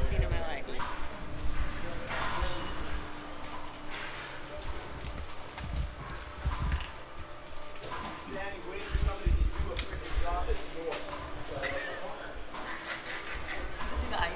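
Indistinct voices and hurried footsteps on a hard floor, with bumps from a handheld phone microphone.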